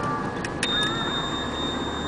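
Quarry crushing and conveyor plant machinery running: a steady rumbling din with high wavering squeals. After a few sharp clicks, under a second in, a high steady whine starts suddenly and holds.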